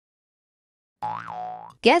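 Silence for about a second, then a short cartoon 'boing' transition sound effect whose pitch rises and then falls, followed near the end by a synthesized voice starting a word.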